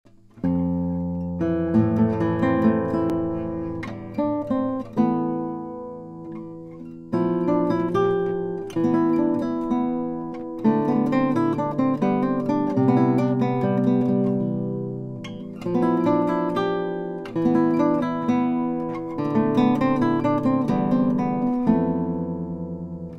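Solo classical guitar, a 1970 Shunpei Nishino instrument, playing plucked melody and chords. The notes ring and fade between phrases, and the playing starts about half a second in.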